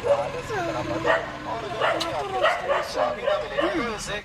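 A young child's high voice making short wordless calls that slide up and down in pitch, yelping rather than speaking.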